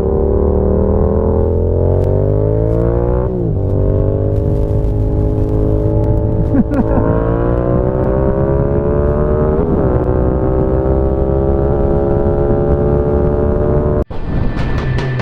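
Motorcycle engine accelerating through the gears. The revs climb steadily, then drop sharply at three upshifts, about three, six and a half and nine and a half seconds in, and climb again after each.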